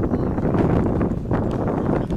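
Wind buffeting the microphone: a loud, rough low rumble.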